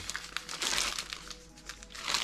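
Plastic zip bag crinkling as it is handled and turned over, over quiet background music with held notes.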